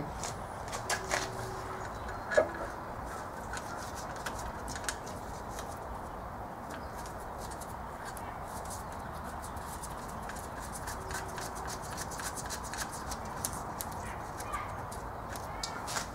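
Scattered light metallic clicks and clinks of a turbo exhaust manifold and its bolts being handled and threaded in by hand against the cylinder head, over a steady background hiss.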